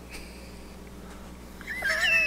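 A house cat meows once near the end, a short call with a wavering pitch.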